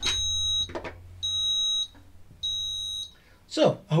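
An electronic beeper sounding three beeps, each about half a second long and a little over a second apart, with a low hum under the first two.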